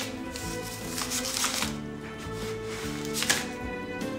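A paper letter being torn up by hand, ripping in a few bursts: the longest about a second in and a short, sharp one near the end. Sustained background music plays underneath.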